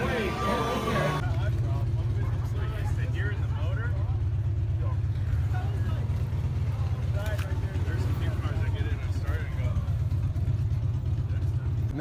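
A car engine idling nearby: a steady low rumble with fast, even pulsing. Faint voices of people talking can be heard behind it.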